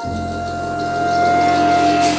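Live flute and upright bass: the flute holds one long, steady note while a low bass note sounds beneath it.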